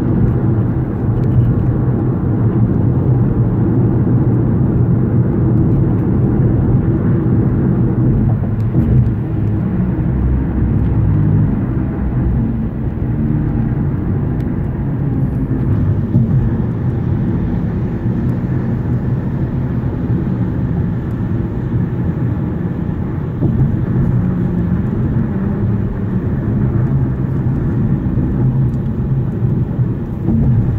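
Steady low rumble of road noise inside a car's cabin while it drives at freeway speed.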